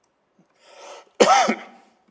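A man coughs once, sharply, into a lectern microphone, just after a short intake of breath.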